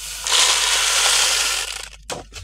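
Spinach seeds pouring from a plastic cup into a green seed pouch: a dense, steady rush of many small grains lasting about a second and a half, tapering off near the end.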